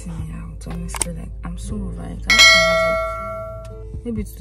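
A bell-chime sound effect, the ding of an on-screen subscribe-button animation, rings out suddenly a little over two seconds in and fades over about a second and a half. Quieter background music plays under it.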